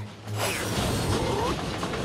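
Train sound effect: a sudden burst of mechanical rail clatter and rumble with metallic squeals, starting about a third of a second in.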